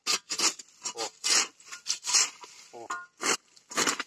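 Hoe blade scraping and chopping through soil and weeds in quick short strokes, about two to three a second. The blade is dragged along the ground rather than lifted between strokes.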